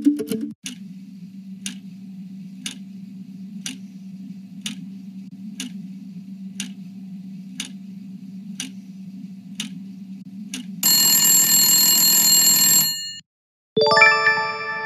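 Quiz-show countdown timer sound effect: a sharp tick about once a second over a low steady hum, about ten ticks in all. Near the end the ticking gives way to a loud buzzing time-up alarm lasting about two seconds, which cuts off suddenly. A bright chime follows at the very end as the answer is revealed.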